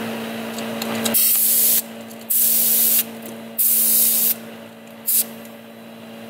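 Compressed air hissing from a leak-down tester's air line on a Mitsubishi 4G63 engine as it is coupled to the cylinder for testing, in three bursts of under a second each and a brief fourth near the end. A steady hum underneath stops about a second in, just as the hissing begins.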